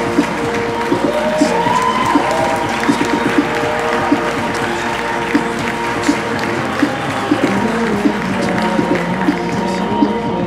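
Music with long held tones, mixed with a crowd applauding.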